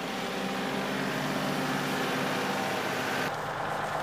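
Farm tractor's diesel engine running steadily at low speed as it is driven along, a steady drone with an even stack of engine tones. About three seconds in, the higher part of the sound drops away abruptly while the engine note carries on.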